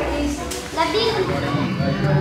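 Children talking while at play, voices rising and falling.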